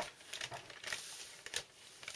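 Faint rustling with scattered light clicks as a small plastic toy tractor is pushed onto a pile of wet cat food on a paper towel.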